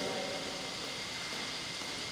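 Steady low hiss of room tone, with a faint thin whine held on one pitch and no other sound.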